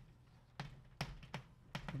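Chalk striking and writing on a blackboard: about four short, sharp taps, starting about half a second in.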